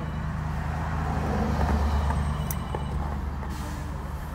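Low engine rumble of a motor vehicle, swelling to its loudest about halfway through and then easing off, with a single sharp click a little past the middle and a short hiss near the end.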